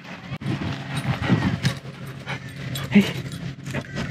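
A dog panting close to the microphone.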